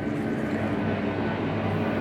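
Steady background hum with an even hiss, level and unchanging, with no distinct events.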